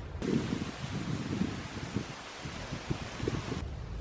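Wind through the forest: a steady hiss of rustling leaves over a low, gusty rumble of wind on the microphone, cutting in shortly after the start and out shortly before the end.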